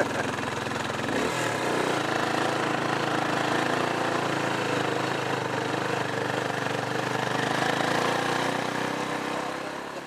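A vehicle's engine running steadily at a constant pitch, with road noise, while driving along.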